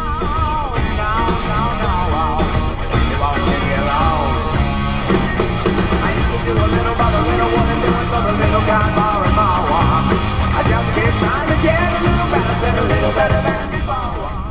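Rock song with a male singer playing on the truck cab's DAB radio.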